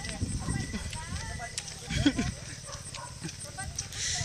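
Mouth noises of someone eating raw honeycomb: chewing, wet lip smacks and clicks, with faint voices in the background.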